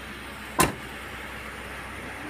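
A car door being shut with a single sharp thump about half a second in, over a low steady hum.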